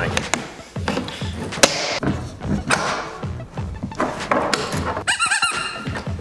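Background music over repeated hollow knocks and thunks of hard plastic parts of a Little Tikes ride-on toy car being pressed and fitted together.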